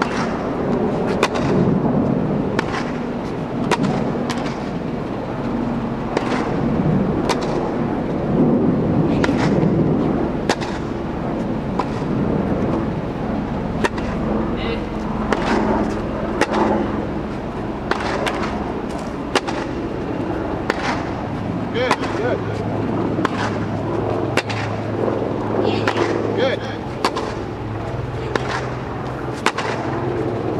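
Tennis ball being struck by racquets in a groundstroke rally inside an inflated tennis dome: sharp hits and bounces about a second apart, over a steady low hum.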